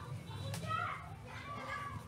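High-pitched voices calling in the background, with a short sharp click about half a second in and a steady low hum underneath.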